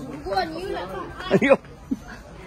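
People talking over a background of shoppers' chatter, with one voice loudest about one and a half seconds in.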